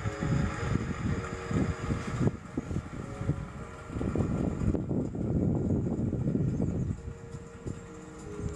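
Wind gusting on the microphone aboard a sailboat under way, an uneven rushing that rises and falls. Faint steady tones sound under it near the start and again near the end.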